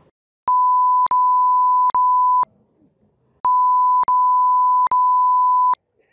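Steady 1 kHz censor bleep in two long stretches of about two seconds each, with a short gap between; it blanks out words in a heated spoken outburst. Faint clicks mark where the tone is spliced in and out.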